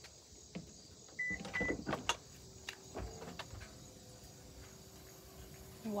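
Power liftgate of an SUV opening: two short beeps a little over a second in, a latch clunk about three seconds in, then the steady hum of the liftgate motor raising the hatch.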